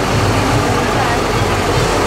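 A farm tractor's engine running close by as it tows a parade float past, with crowd voices behind it.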